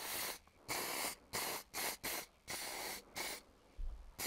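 Aerosol can of clear-coat lacquer spraying in about seven short hissing bursts, each under half a second, with brief pauses between them, as clear coat is laid onto a motorcycle frame.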